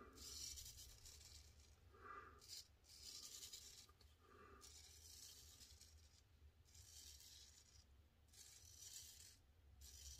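Faint scraping of a Ribbon 1000 straight razor cutting through lathered beard stubble, in a series of short strokes with brief pauses between them.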